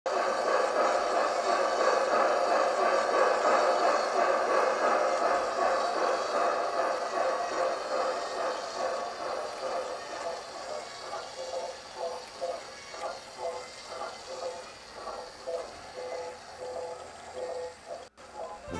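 Sampled steam-engine sound from a Quantum Titan model-railroad sound decoder, played through small onboard speakers. A dense, steady rush of steam thins out about ten seconds in into separate exhaust chuffs, about two a second, and grows quieter.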